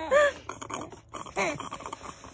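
Baby's short, high-pitched giggles and squeals, one right at the start and another about a second and a half in.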